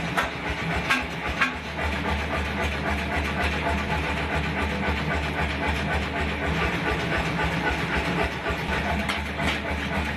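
Electric fan motor in a metalworking shop running steadily with a low hum and a hiss. A few light metal clinks come in the first second and a half.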